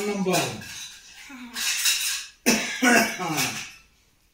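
Voices speaking: a call of "hello" and more talk, with a short noisy, cough-like burst about halfway through.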